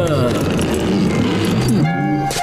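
A cartoon man's drawn-out wailing cry that bends up and down in pitch, over a loud, dense rumbling noise.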